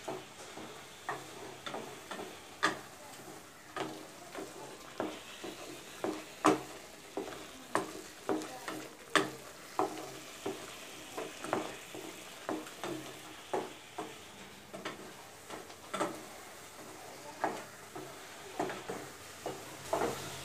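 A long-handled spatula stirring grated carrot in a black kadai, knocking and scraping against the pan about once or twice a second, irregularly. Under it runs a faint, steady sizzle of the carrot frying.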